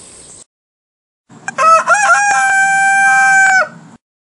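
A rooster crowing once: a few short rising notes running into one long held note, starting about a second in and lasting a little over two seconds.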